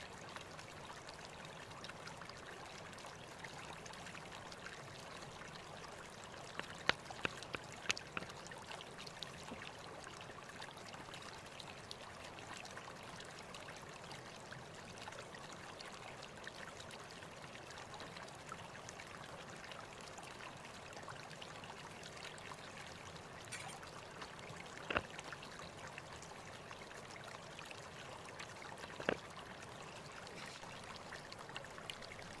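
Steady rushing background noise with no clear source, with a few faint sharp clicks and knocks: a short cluster about a quarter of the way in and two more near the end.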